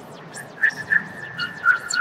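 A run of short, high, whistle-like electronic beeps and blips, with a steadier held tone in the second half. Underneath is a background of repeating swooping sweeps, like a spaceship's computer.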